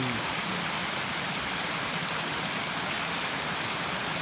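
A woodland stream rushing steadily over rocks.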